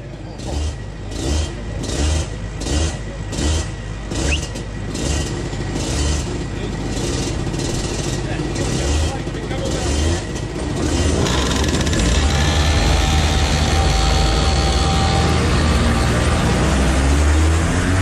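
Rotax Max Evo 125 cc two-stroke kart engine. For the first eleven seconds or so there is only a regular low pulsing, about one and a half beats a second. Then the engine is running continuously and grows louder as the kart pulls away and revs up.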